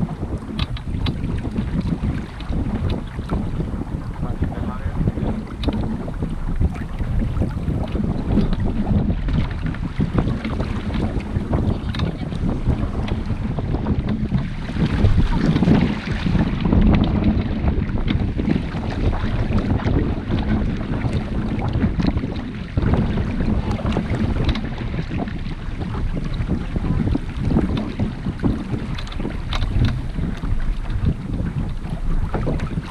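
Wind buffeting the microphone over water rushing along the hull of a small sailboat under sail. The noise swells for a few seconds about halfway through.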